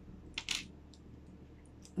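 Small letter tiles clicking against each other as they are handled and drawn by hand: a short clatter about half a second in, then a few faint ticks near the end.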